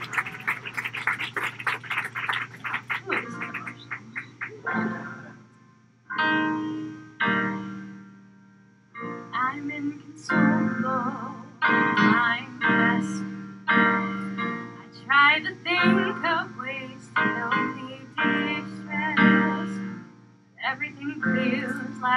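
Applause fading away over the first few seconds, then a slow song begins: a woman singing into a microphone over a keyboard accompaniment, in phrases separated by short pauses.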